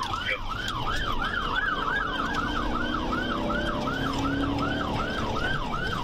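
Police car siren in yelp mode: a fast, steady warble that rises and falls about three to four times a second.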